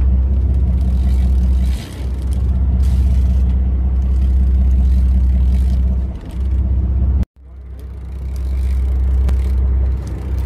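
Boat engine running steadily with a deep, even hum. About seven seconds in, the sound cuts out completely for an instant and then swells back.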